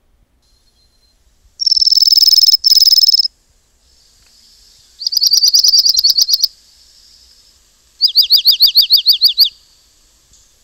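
Dark-eyed junco singing: three high, even trills of rapidly repeated notes, each about a second and a half long and a few seconds apart. The last trill is slower, its notes each sliding downward.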